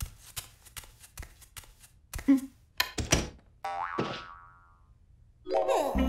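Cartoon sound effects: a quick run of light taps with a short character vocalisation among them, then a springy boing about four seconds in, and a loud burst of voices and music near the end.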